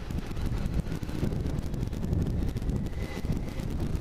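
Wind buffeting the camera's microphone on a moving Kawasaki GTR1400 motorcycle, over the low, steady running noise of its inline-four engine and tyres.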